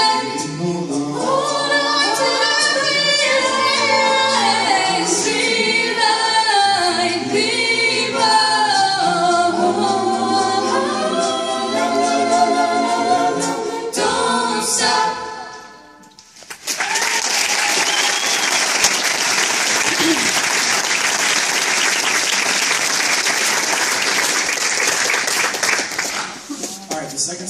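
A cappella choir singing, the piece ending about fifteen seconds in; after a short pause an audience applauds.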